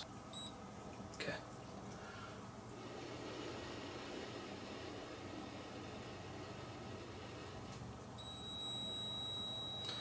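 Small portable keychain breathalyzer beeping: one short high beep as it is switched on, then a faint hiss of breath blown into its mouthpiece, and a long steady high beep starting about eight seconds in as the reading is taken.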